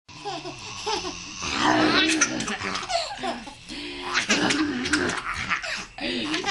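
Six-month-old baby laughing in repeated bursts of giggles, loudest about two seconds in and again about four seconds in.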